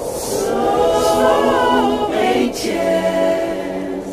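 R&B slow jam vocals: several voices singing in close harmony, with long held notes.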